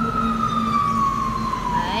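A siren-like wailing tone: one long, loud note slowly falling in pitch, over a steady low hum.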